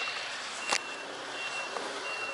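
A vehicle's reversing alarm beeping: one high tone repeating about one and a half times a second over steady street noise, with a sharp click a little before the middle.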